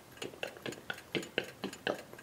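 Old Eastman Kodak darkroom timer ticking, a steady run of sharp clicks about four a second.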